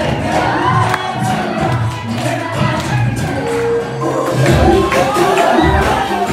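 Loud dance music over a hall's loudspeakers with an audience cheering and shouting over it; the bass beats grow stronger in the second half.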